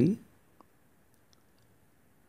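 A word of a man's speech right at the start, then a quiet room with a few faint, sparse computer mouse clicks.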